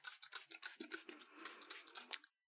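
Faint, quick scratchy strokes, several a second, of a cloth rubbing against a glass lightboard.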